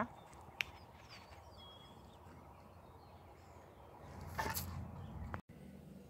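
Quiet rural outdoor background with a few faint bird chirps, and about four seconds in a short breathy rush of noise close to the microphone, before the sound cuts to a quieter room.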